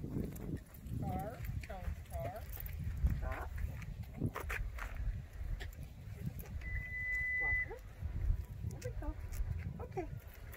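Soft, indistinct talking and scattered handling clicks over a low rumble, with a single steady electronic beep lasting about a second a little past the middle.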